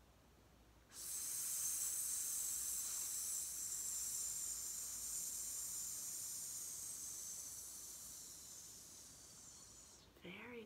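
A woman breathing out slowly on a long, steady 'sss' hiss in a calming belly-breathing exercise. It starts suddenly about a second in and fades gradually over about nine seconds as the air runs out, with the air coming out 'real quietly'.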